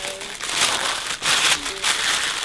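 Thin plastic gift wrapping crinkling and rustling in uneven surges as hands unfold it to unwrap a present.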